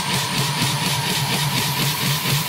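Electronic dance music build-up: a slowly rising synth sweep over rapidly pulsing white noise and a throbbing bass note.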